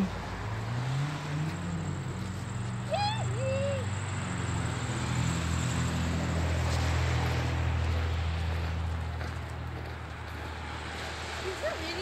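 A motor vehicle's engine runs close by with a low hum. Its pitch rises briefly in the first couple of seconds, and it grows somewhat louder through the middle before easing off near the end. A short voiced sound is heard about three seconds in.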